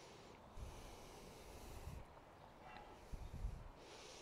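Faint breathing, likely through the nose: a long, soft hissing breath from about half a second in to two seconds, then a shorter one a little after three seconds, over a low rumble.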